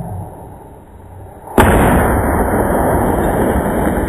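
A firework going off inside a model cathedral: a sudden loud blast about a second and a half in, followed by loud, continuous rushing noise that keeps going.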